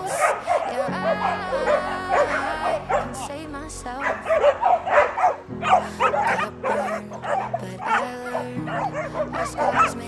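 Dogs yipping and barking in quick, excited bursts over a pop song.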